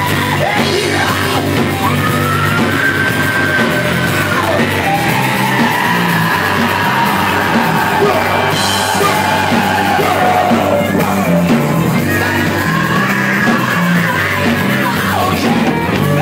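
Live rock band playing loudly: drum kit, electric guitar and bass guitar, with a voice yelling over the music and long held notes that bend slowly in pitch.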